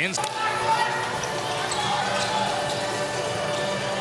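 Crowd noise in an indoor basketball arena during live play: a steady din of many voices, with a brief sharp sound at the very start.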